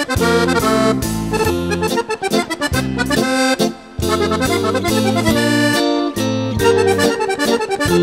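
Piano accordion playing a lively, fast tune of short, detached notes over a moving bass line, backed by a band, with a brief break in the phrase about halfway through.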